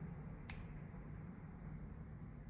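A single faint, sharp click about half a second in, from pliers gripping a small metal jump ring, over a low steady hum.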